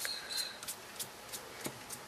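Sponge dauber dabbing ink onto a paper heart: faint soft taps, about three a second.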